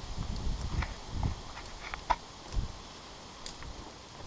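Movement noise from a tree climber's body-worn camera and gear: low rumbles on the microphone and scattered light clicks and knocks, the sharpest knock about two seconds in, settling quieter in the second half.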